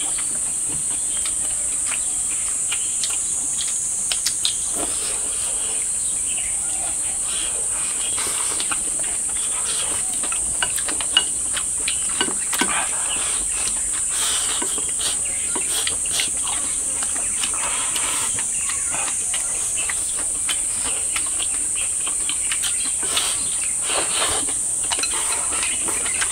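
A steady, high-pitched chorus of insects buzzing throughout, with scattered small clicks and chewing sounds of people eating from bowls with chopsticks, one sharper click about eleven seconds in.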